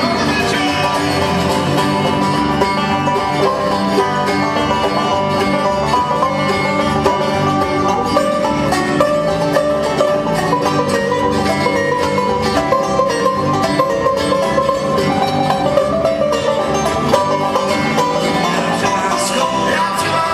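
Live acoustic bluegrass-style band playing, with a banjo to the fore over strummed acoustic guitars and other plucked strings, in a steady, busy picking passage.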